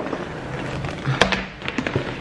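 Rustling and knocking of packaged fabric car seat covers being handled, with a sharp tap a little over a second in and a few smaller clicks near the end.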